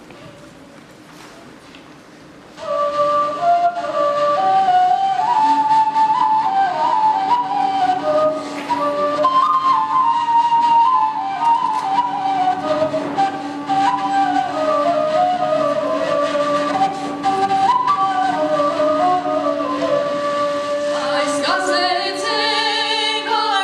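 A woodwind plays a slow, stepwise melody over a steady low drone, coming in about two and a half seconds in after faint hall noise. Voices begin singing near the end.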